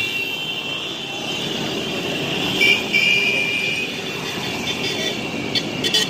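Several small motorcycles riding past on a street, their engines running steadily amid general street noise, with a brief high-pitched tone about two and a half seconds in.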